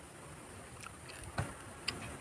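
Faint outdoor background: a steady high-pitched insect drone over a low hiss, with two small clicks in the second half.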